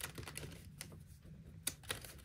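Light clicks and paper rustling as punched refill sheets are worked onto the metal rings of a leather ring-binder planner, a few sharp ticks spaced unevenly, the loudest just before the end.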